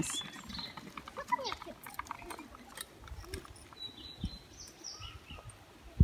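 Faint outdoor ambience: distant voices, a few short bird chirps about four to five seconds in, and some soft low thumps, the sharpest right at the end.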